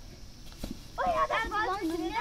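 High-pitched laughter that starts about a second in, with the pitch wavering quickly up and down, after a quieter first second with one soft knock.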